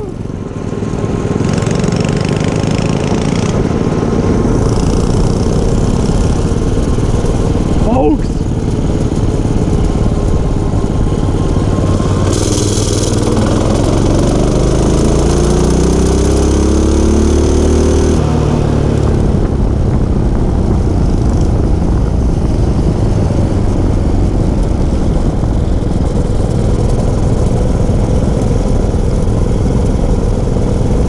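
Small minibike engine running under way, with heavy wind rumble on the microphone. About halfway through, its pitch climbs steadily for several seconds as it speeds up, then drops off suddenly.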